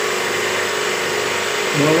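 Small electric pressure washer (jet cleaner) running steadily while spraying an air conditioner's evaporator coil: a steady motor hum under an even hiss.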